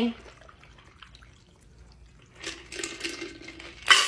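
Shaken cocktail being strained from a cocktail shaker over ice into a pint glass: a faint liquid pour that grows louder for about the last second and a half. It ends with a sharp knock.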